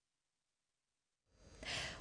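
Silence, then near the end a short audible in-breath by a woman just before she begins to speak.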